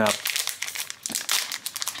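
Plastic packaging pouch crinkling as it is pulled open by hand, a dense run of crackles.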